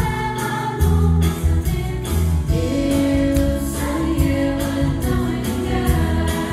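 Stage-musical ensemble singing together in chorus over musical accompaniment with a steady beat and a strong bass line.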